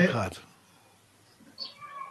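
The tail of a man's spoken "okay" trailing off in the first half-second. Then a pause of near silence on a video-call line, with a few faint, brief sounds near the end.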